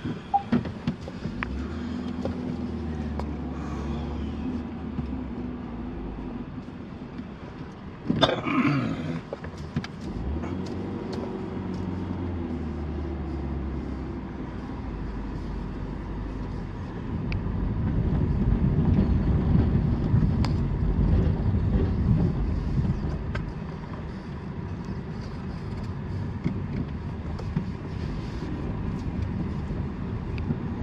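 Car engine and tyre noise heard from inside the cabin while driving slowly, with a short laugh about eight seconds in. From about seventeen seconds in, a louder low rumble lasts several seconds as the tyres roll over the narrow plank deck of a bridge.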